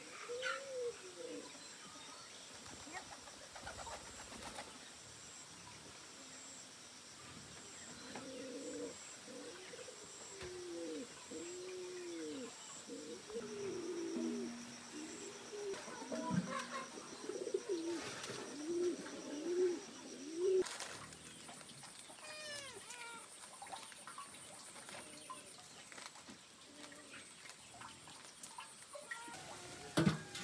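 A dove cooing: a few coos at the start, then a long run of repeated rise-and-fall coos through the middle. A small bird chirps briefly after them.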